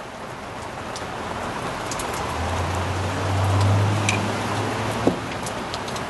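Steady rain hiss, with a low hum that swells and fades in the middle and a single sharp click about five seconds in.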